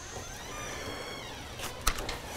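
A faint whistle-like tone falling steadily in pitch for about a second and a half, then two sharp taps near the end as a Bible is handled on a wooden pulpit.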